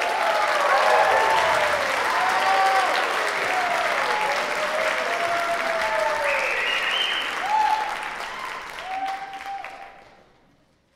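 Audience applauding after a jazz ensemble's number, with whoops and cheers rising over the clapping, dying away near the end.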